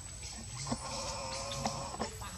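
A macaque giving one drawn-out, even-pitched call lasting about a second, starting a little before halfway through.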